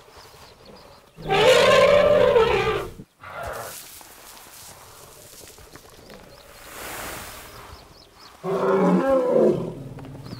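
An African elephant calls twice with a loud roar: a first call lasting about a second and a half, then a shorter one of about a second near the end.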